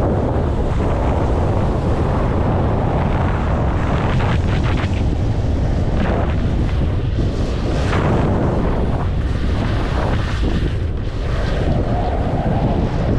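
Wind buffeting the microphone of a skier's body-worn camera during a descent, with a steady low rumble. Skis hiss through soft snow in surges that come and go every second or two with the turns.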